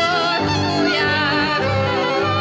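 Live Hungarian folk music: a fiddle and a double bass playing, with a woman's voice singing an ornamented, wavering melody over them. The double bass's low notes pulse in a steady rhythm underneath.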